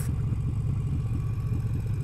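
Harley-Davidson Sportster's V-twin engine running at steady low revs while the bike cruises, a constant low engine note with fine even pulsing.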